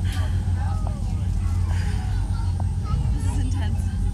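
Passenger ferry's engines running with a steady low drone, heard inside the cabin during a rough sea crossing.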